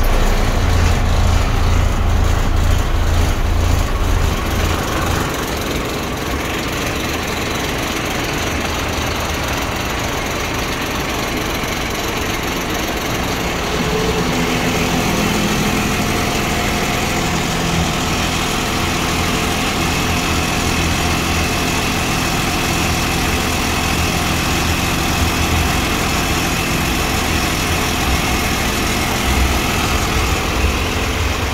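A 1994 5,000-gallon jet fuel truck's engine idling steadily, with a strong low throb for the first five seconds or so, then heard more lightly from outside the cab.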